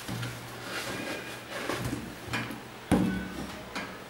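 Handling noise as sneakers are moved about and set down on cardboard shoe boxes: rustling and light knocks, with one sharp thump about three seconds in, the loudest sound.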